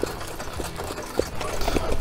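Harness racing sulky rolling over a dirt track behind a trotting horse: a low rumble with a rapid rattling chatter and a few knocks from the hooves and harness.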